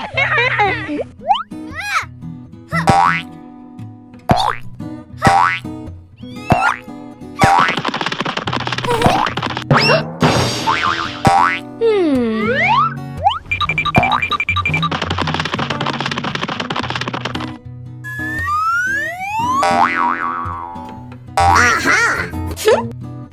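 Children's cartoon background music with comic sound effects over it: boings, whistle-like pitch slides and sharp hits. About twelve seconds in comes a long falling slide, and later a few quick rising ones.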